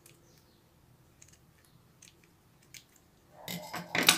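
Steel scissors snipping satin ribbon close to an organza bow: a few faint, separate clicks of the blades. A louder scraping rustle of handling builds near the end.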